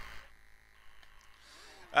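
Near silence: a short pause in the commentary, with the commentator's voice trailing off at the start and starting again just before the end.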